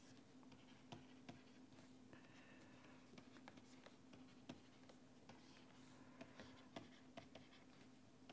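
Near silence: faint, scattered taps and scratches of a stylus writing on a pen tablet, over a faint steady hum.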